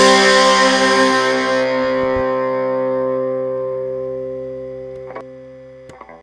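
Final chord of a punk rock song on distorted electric guitar, left ringing and slowly fading away, with a couple of small clicks near the end.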